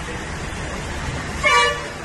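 A vehicle horn gives one short honk about one and a half seconds in, over a steady hiss of street traffic and water on the flooded road.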